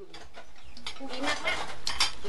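Metal ladle stirring in an aluminium cooking pot, scraping and clinking against its side several times. The sound fades in and grows louder.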